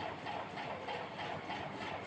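Faint scratching of a dry-erase marker on a whiteboard as words are written, over steady low room noise.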